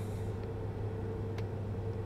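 Steady low hum inside a car's cabin, with a faint click about one and a half seconds in.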